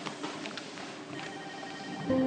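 A telephone ringing in the background of a hospital ward: one electronic ring starting a little past halfway and lasting under a second, over a low hubbub with a few light clicks.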